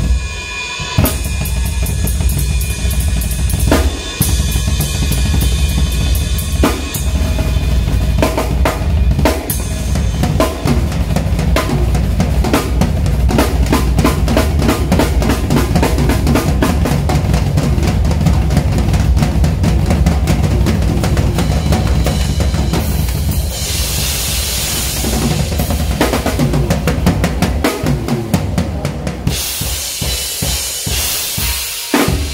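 Live drum solo on a Tama kit with Paiste cymbals: fast, dense strokes on snare and toms over a steady run of bass drum beats. About three-quarters of the way through, the cymbals ring in a sustained wash for several seconds.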